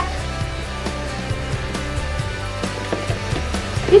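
Faint background music over a steady low hum, with a few small knocks.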